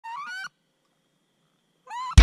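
Wood duck's squealing call, heard twice: a rising squeal lasting about half a second at the start, and a second, shorter rising squeal near the end, with near silence between.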